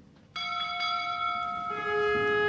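Pipe organ starting to play: a chord of steady, held notes comes in suddenly about a third of a second in, and more notes join near the end.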